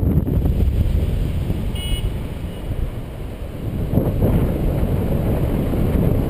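Wind rushing over the action camera's microphone in paraglider flight: a steady low rumble and buffeting that swells around four seconds in. A very short high beep sounds about two seconds in.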